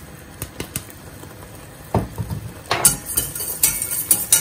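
A few faint clicks as a wooden pepper mill finishes grinding over a stainless steel saucepan, then a knock about halfway in. Near the end a utensil starts clinking and scraping against the saucepan as a cream sauce is stirred.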